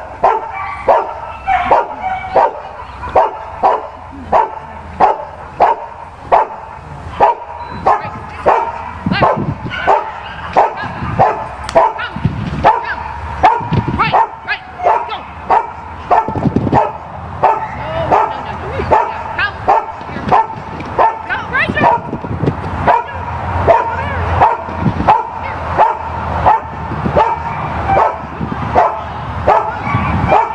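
A dog barking over and over at a steady pace, about three barks every two seconds, without a break.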